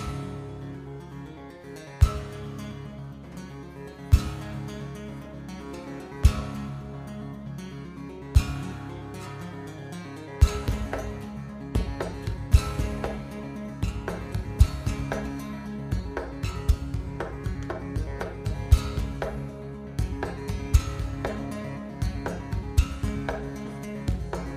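Solo steel-string acoustic guitar played fingerstyle, with ringing chords and melody. There is a sharp percussive hit about every two seconds at first, and from about ten seconds in a busier, driving rhythm of hits.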